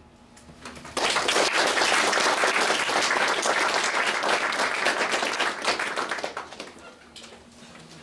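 Audience applauding. The clapping starts suddenly about a second in, holds steady, then thins out and dies away near the end.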